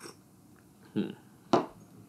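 A small glass tasting cup set down on a tabletop with one short, sharp knock about one and a half seconds in, after a brief 'mm' from the taster.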